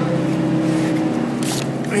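Trailer refrigeration (reefer) unit running with a steady drone of several tones, with a brief scuffing noise about one and a half seconds in.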